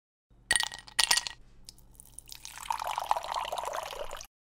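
A drink can cracked open: a sharp click and then a short hiss of escaping gas, followed by carbonated seltzer poured into a glass, fizzing and crackling and growing louder toward the end.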